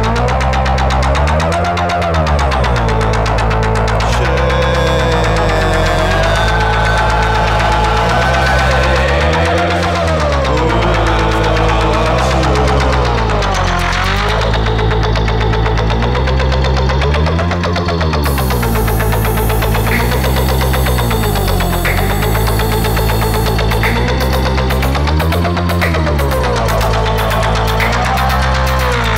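Modular synthesizer playing live electronic music: a thick, sustained low drone whose pitch swoops down and back up about every eight seconds. A high hiss joins just past halfway, and quick regular high ticks come in near the end.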